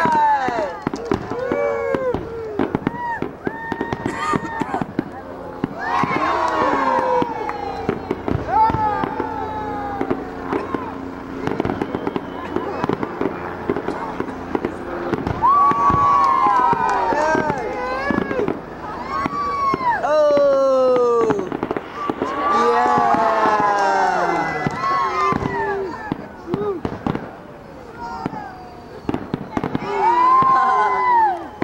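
Aerial fireworks going off in a run of bangs and crackles, with many people's voices rising and falling throughout.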